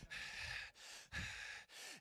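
A man's breathing picked up by a close microphone: about four faint, hissy breaths between phrases of loud preaching.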